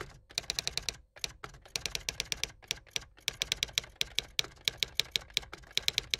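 Typing sound: rapid key clicks, about ten a second, in runs broken by a few brief pauses.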